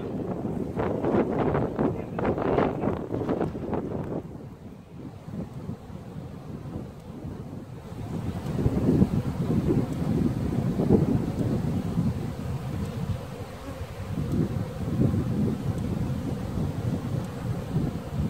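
Wind buffeting the microphone, heard as gusty low rumbling that swells from about halfway through. In the first few seconds there is also a run of short noises.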